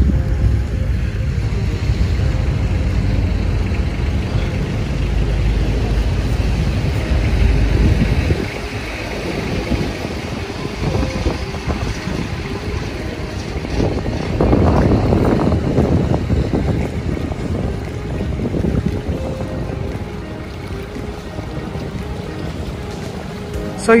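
Outdoor ambience at the water's edge: a steady low rumble that drops away suddenly about eight seconds in, leaving a lighter, even background.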